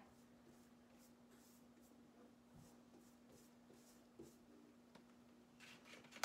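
Near silence: faint, soft strokes of a paintbrush on window glass, repeated, over a steady low hum.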